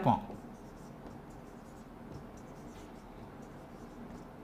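Marker pen writing on a whiteboard: quiet, irregular short strokes.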